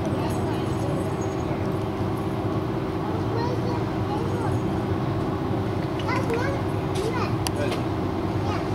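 Indistinct background chatter of people, including children's voices, over a steady low hum.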